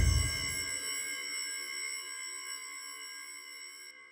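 The closing tail of an electronic music track: a high synthesized chord of several steady ringing tones, fading away and cutting off just before the end.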